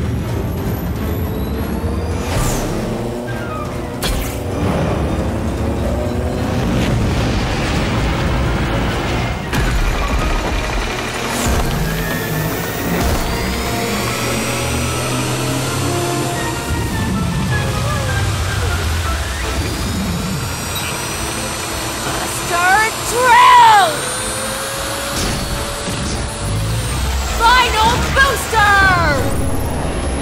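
Cartoon action soundtrack: music under layered sound effects of mechanical whirring and rising and falling whooshes. Wordless vocal cries come in about 23 seconds in and again near the end.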